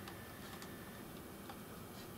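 Quiet room tone with three or four faint, short clicks as the paper-and-card star book is turned by hand on its base.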